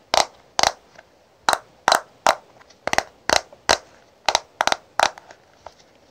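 Long fingernails tapping on the hard plastic case and clear lid of a round eyeshadow compact: about a dozen sharp clicking taps, loosely grouped in threes, with quiet between them.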